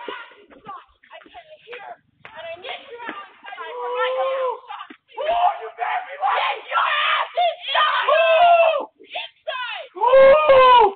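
Voices screaming and yelling in distress, high-pitched and wavering with no clear words, growing louder about halfway through. The sound comes through a doorbell camera's microphone, so it is thin and lacks highs.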